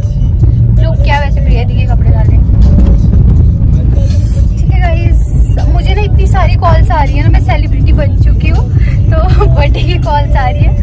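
A woman talking over background music, with the steady low rumble of a moving car's cabin underneath.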